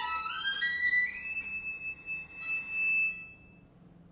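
Solo violin playing a rising run of quick notes that climbs to a high note, held for about a second and stopped just after three seconds in, leaving a pause of faint room sound.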